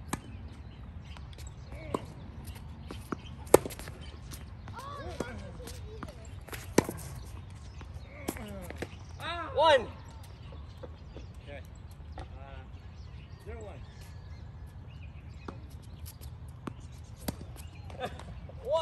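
Tennis balls struck by racquets and bouncing on a hard court during a rally: sharp single pops a second or more apart, the sharpest about three and a half and seven seconds in. Short voice-like calls come in between, the loudest about halfway through, over a steady low rumble.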